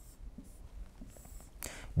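Faint scratching and light taps of a stylus writing on an interactive whiteboard screen.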